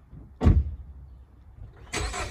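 A Dodge car's door shutting once about half a second in, a single sharp thud that dies away quickly. Just before the end the engine start begins.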